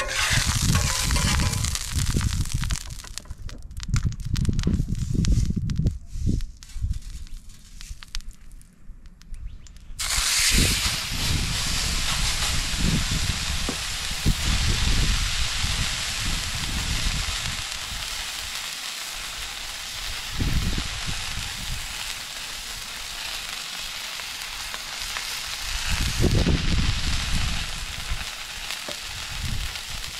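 Pork chops frying on a Blackstone flat-top griddle. The sizzle starts suddenly about ten seconds in, as the meat goes onto the hot surface, and holds steady after that. Before it there is low rumbling with a few knocks.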